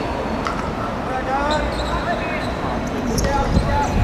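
Footballers shouting and calling to each other during play, with a few sharp thuds of the ball being kicked, the loudest near the end.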